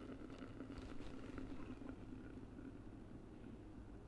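Sparkling wine (prosecco) poured from the bottle into a glass carafe onto peach juice premix: a faint, steady pour.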